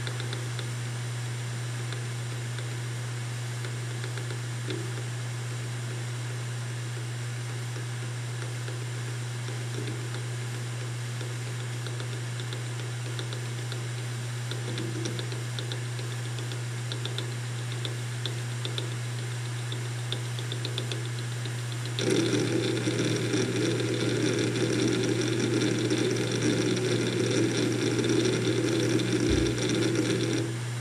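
WD Caviar Black 7200 rpm hard drive spinning with a steady hum, with a few faint head seek clicks. About three-quarters of the way through, the drive breaks into continuous rapid seeking, a louder dense chattering of the read/write heads that runs to the end.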